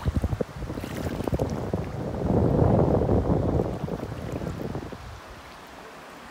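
Wind buffeting the microphone: a loud, low rumble that flutters at first, swells about two seconds in and dies down near the end.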